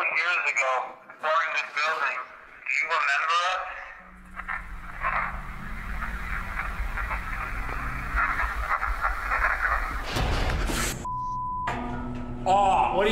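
Voices talking, then playback of a digital voice recorder's EVP recording: a hissy stretch with a low hum and faint voice-like sounds. Near the end comes a short loud burst, then a steady beep for about a second.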